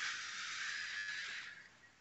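A soft, steady hiss that fades out about a second and a half in.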